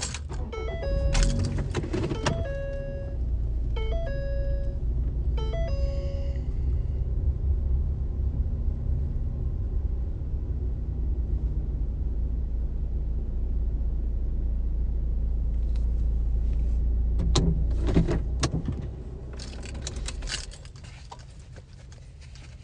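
Inside a car: a short electronic chime beeps repeatedly in the first few seconds, with keys jangling. A steady low engine rumble follows and dies away about eighteen seconds in, leaving a few clicks and knocks.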